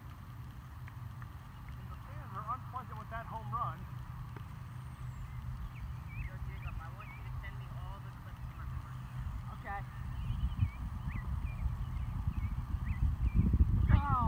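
A gusty low rumble, typical of wind on an outdoor microphone, growing louder in the last few seconds, with faint distant voices about two to four seconds in and a few short, faint high chirps.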